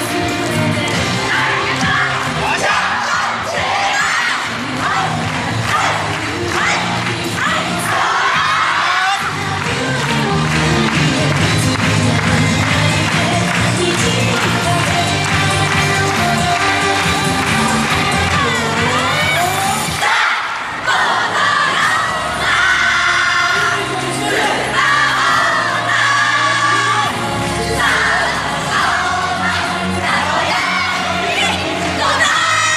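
Loud yosakoi dance music played for a team's street performance, with singing, group shouts and crowd cheering over it. The music breaks off briefly about twenty seconds in, then goes on.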